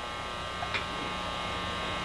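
Drive motor of a rotating-cylinder vane flutter exciter running with a steady electric buzzing hum, with one faint click about three quarters of a second in.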